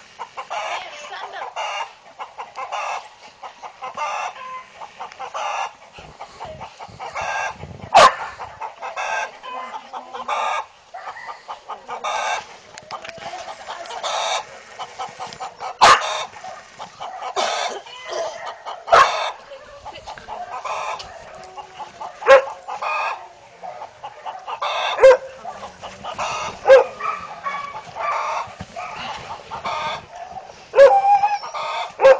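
A continuing run of short, repeated animal calls, one or two a second, with a handful of louder sharp sounds scattered through.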